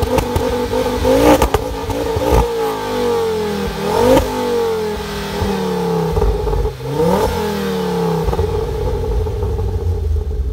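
Ford Focus RS Mk2's turbocharged 2.5-litre five-cylinder engine revving through a Milltek exhaust with the car standing still. It gives three quick blips of the throttle about three seconds apart, and each time the revs fall slowly back toward idle. A few sharp cracks from the exhaust come around the first two blips.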